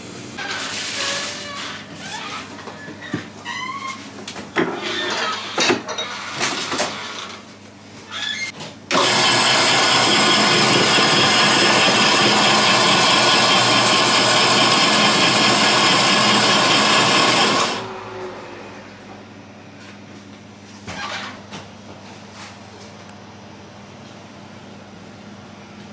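Electric snow-ice shaving machine running loud and steady for about nine seconds, its blade shaving a block of flavoured ice into ribbons; it starts abruptly about nine seconds in and cuts off just as abruptly. Before it, irregular knocks and clinks.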